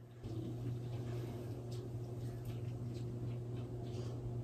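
Gloved hands squeezing and working thick hair dye through a section of hair, making faint wet squishing sounds over a steady low hum.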